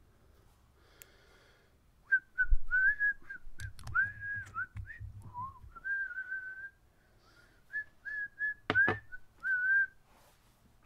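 A man whistling a tune to himself in short phrases from about two seconds in, a clear single note that wavers and briefly drops lower midway. A couple of sharp clicks come near the end as small bottles are handled.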